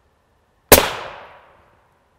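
A single rifle shot from a .308 Thompson/Center Compass with a Yankee Hill suppressor, firing an M993 tungsten-core armor-piercing round. It comes about two-thirds of a second in as one sharp report that dies away over about a second.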